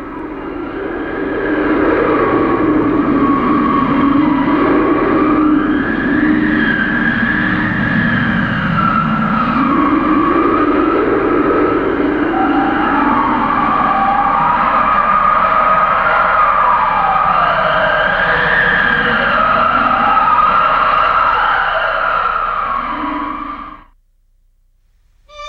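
Howling blizzard wind sound effect: several whistling tones rise and fall slowly over a lower wavering tone, loud and steady, then fade out sharply at the very end.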